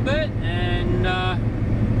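Steady low drone of a Volvo 780 semi truck's Cummins ISX diesel and its road noise, heard inside the cab while cruising on the highway. Over it a man's voice makes a few short drawn-out sounds near the start.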